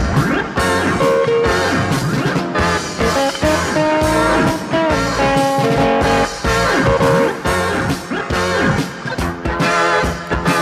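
Rock band playing an instrumental passage: guitar playing held melody notes over bass and drums with a steady beat.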